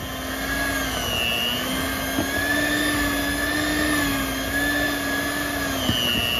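Electric mixer running steadily, its beater working through thick frosting. The motor hum wavers slightly up and down in pitch, with a small tick about two seconds in and another near the end.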